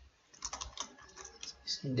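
Typing on a computer keyboard: a quick run of light keystrokes lasting about a second and a half, as a word is typed into a code editor.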